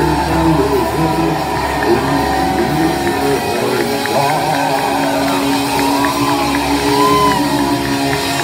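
Gothic rock band playing live in a club, with electric guitars and bass holding sustained chords and a wavering melodic line over them. The heavy low end drops away about halfway through.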